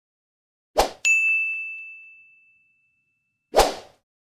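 Subscribe-button animation sound effects: a short hit, then a bell ding that rings out and fades over about a second and a half, and another short hit near the end.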